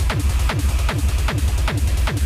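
Fast, hard electronic dance track mixed live on Pioneer CDJ decks: an even, driving kick drum about four times a second, each kick falling in pitch, over heavy bass.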